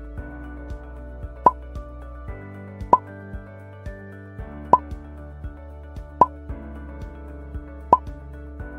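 Background music of a quiz countdown timer, a steady looping tune with a sharp pop about every second and a half.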